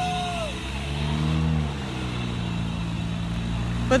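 Cars driving past on a city street, with one vehicle's engine passing by about a second in. A car horn sounds at the start and stops about half a second in.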